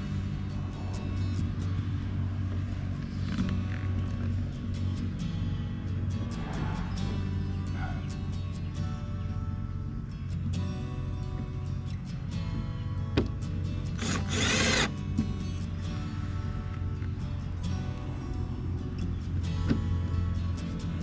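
Background music plays throughout. About two-thirds of the way through comes a short whirring burst of about a second from a cordless power tool.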